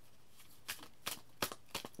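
Tarot cards being shuffled by hand: a handful of quiet, scattered card flicks and slaps.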